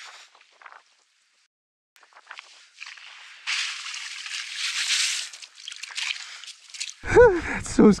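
Water fizzing and sloshing in an ice-fishing hole, stirred up by a strong current running under the ice. It builds in about two seconds in, is strongest in the middle, and fades out before the end.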